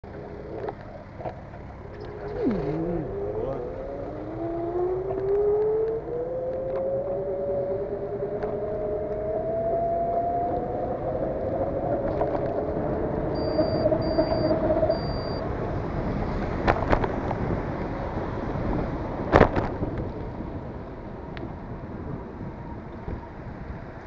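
A vehicle pulling away on a wet road: a smooth whine rises in pitch over several seconds as it speeds up, then levels off, over a steady hiss of tyres on the wet surface. Three short high beeps come about midway, and a couple of sharp knocks follow later.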